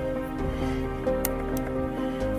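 Background music: sustained, layered tones that shift from note to note.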